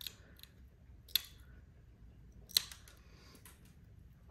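Wheeled glass nippers snapping small corners off a piece of black stained glass: two sharp snaps about a second and a half apart, with a few fainter clicks between.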